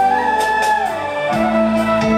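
Dangdut koplo band playing live: a held melody line that slides between notes, with a lower sustained note coming in past the middle.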